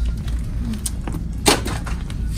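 A single sharp knock about one and a half seconds in, over a steady low hum.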